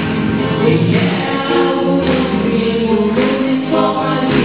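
A Christian worship song: singing over instrumental accompaniment, with held notes and a bass line that shifts about every second.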